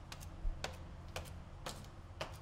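Sharp, irregular clicks or taps, roughly two a second, over a low steady hum.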